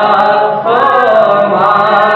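Several voices singing together without instruments, in long held notes that glide up and down in pitch, with a short break about half a second in before the next phrase starts.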